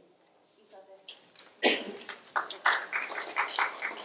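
Short burst of applause from a small audience, rapid claps starting about a second and a half in and stopping just before the end.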